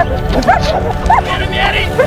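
Dog yipping and whining in a few short, high, rising-and-falling cries over background music.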